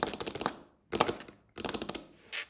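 Typing on a computer keyboard: three quick bursts of rapid keystrokes with short pauses between.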